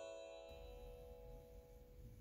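The fading tail of a chiming intro jingle: several ringing notes die away over the first second or so, leaving faint low room hum from about half a second in.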